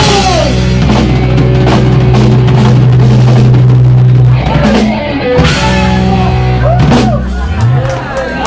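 Live Oi! punk band playing loud: distorted guitar, bass and drum kit hold a long low chord that breaks off about four seconds in, then the playing picks up again. Shouted voices sound over the music.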